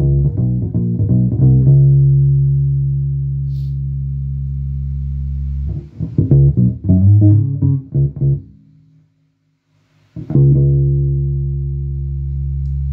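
Electric P bass played through a 1972 Davoli Lied Organ Bass 100 amplifier under test. A quick run of plucked notes leads into one low note left to ring for about four seconds. Another short run follows and dies away to silence about nine seconds in, then a new low note is struck and held.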